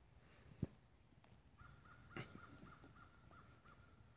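Faint bird calls: a rapid series of short, evenly repeated notes at about four a second, starting about one and a half seconds in. A sharp knock comes about half a second in, and a duller thump just after two seconds.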